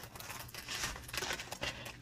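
Small plastic packets of diamond painting drills on a strip, crinkling and rustling softly as they are handled.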